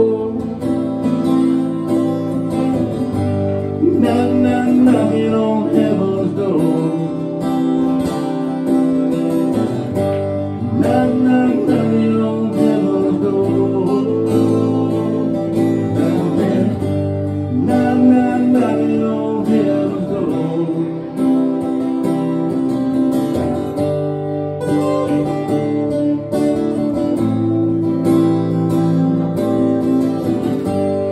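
Two acoustic guitars played together in a live instrumental passage of a song, steady strumming throughout.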